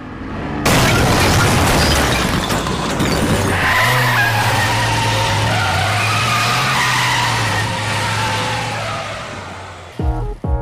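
Car-crash sound effect: a rush of noise builds, then a sudden crash about a second in as the car bursts through the brick wall, followed by a long tire skid over a steady engine note that fades out near the end.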